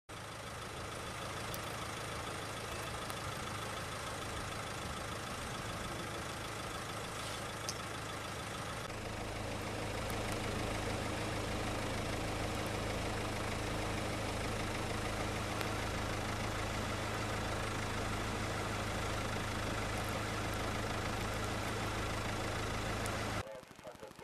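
A vehicle engine idling steadily with a low hum, getting a little louder about nine seconds in and cutting off suddenly near the end.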